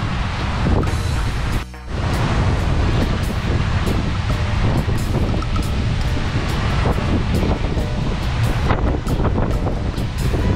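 Strong gusty wind buffeting the microphone over rough surf churning against the bridge pilings, a constant loud rushing with a brief drop near two seconds in.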